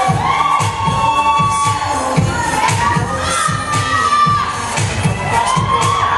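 Pop line-dance music with a steady, fast beat, played loud in a large hall. A crowd shouts and cheers over it.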